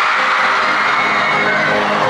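Live J-pop idol concert audio: the song's backing music playing, with the audience cheering and screaming over it.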